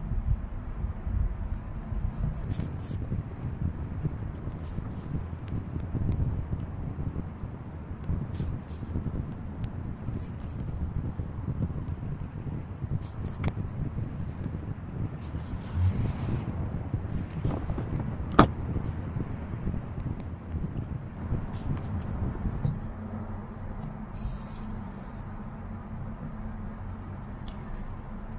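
Soft handling noise from hands sewing crocheted yarn pieces together with a metal tapestry needle, over a low, uneven rumble with a few faint small clicks.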